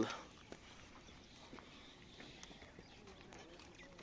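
Faint, scattered hoof thuds of a Silesian horse walking on soft dirt as it is led on a lead rope.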